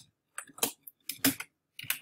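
Computer keyboard typing: a handful of separate keystrokes at an uneven pace, with short silences between them.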